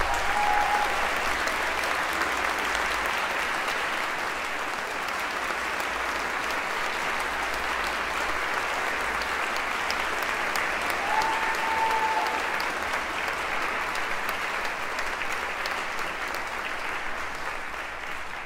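Large audience applauding steadily in a concert hall: a dense, even patter of many hands clapping that holds for the whole stretch, with two short steady tones rising above it, one at the very start and one about two-thirds of the way through.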